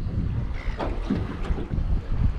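Wind buffeting the microphone over choppy open water, a steady low rumble with waves washing around the small boat.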